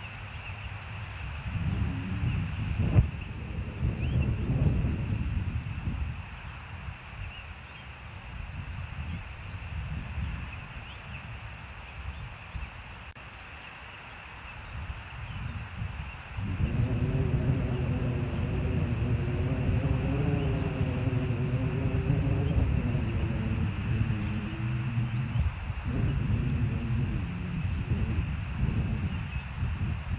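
Low outdoor rumbling, then from about halfway an engine's droning hum with a slightly wavering pitch that lasts about nine seconds before it drops away.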